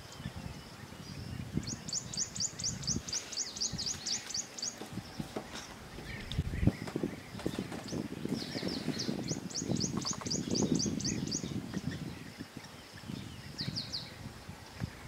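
A bird calling in long runs of rapid, sharp high notes, about five a second for some three seconds, twice over and briefly again near the end, over an uneven low rumble, with a single knock about seven seconds in.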